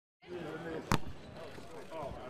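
A basketball bounces once on a hardwood court about a second in, over the chatter of several voices.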